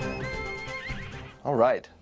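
A horse's whinny, a high cry wavering in pitch through about the first second, over film music; a man then says "Right" near the end.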